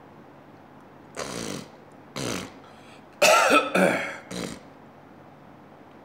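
A person coughs twice, about a second apart, then says a loud voiced "oh" and sighs.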